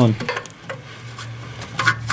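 Faint metal rubbing and scraping as a 22 mm oxygen-sensor socket is turned by hand to unscrew an upstream O2 sensor from the exhaust, its threaded joint already broken loose. A steady low hum runs underneath.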